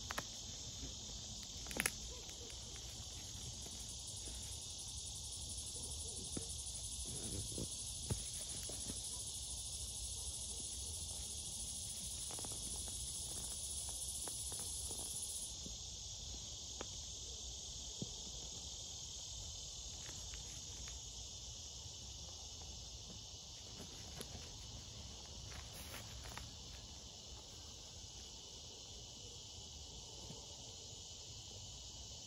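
A steady, high-pitched chorus of insects, with a thinner, higher whine in it that stops about halfway through. Now and then there are soft rustles and clicks as a sleeping bag is cinched down by the straps of its compression sack.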